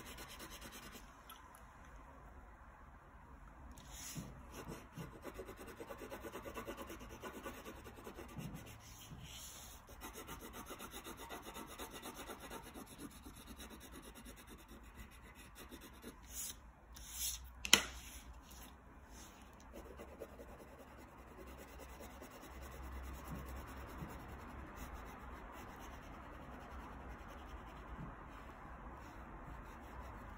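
Wax crayon rubbing back and forth on paper, coloring lightly in quick strokes. A single sharp click a little past the middle.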